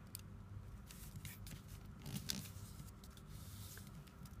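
Faint rustling and creasing of origami paper as a flap is folded and pressed flat by hand, with a few soft scrapes scattered through.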